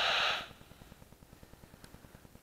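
Magenta Bat 4 heterodyne bat detector giving out its steady hiss, which cuts off about half a second in. After that only a faint low crackle remains.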